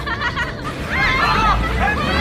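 Several people's voices talking over one another. A low rumble comes in about a second in as a van approaches.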